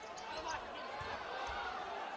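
A basketball being dribbled on a hardwood court: a few low bounces about half a second apart, over the steady murmur of a large arena crowd.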